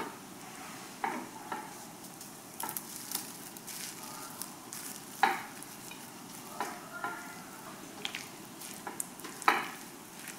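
Tomato sauce simmering in a skillet with a faint, steady sizzle, broken by light knocks and scrapes of a spatula and utensils on the pan and a glass dish as crumbled soy meat is tipped in and stirred. The sharpest knocks come about five seconds in and again near the end.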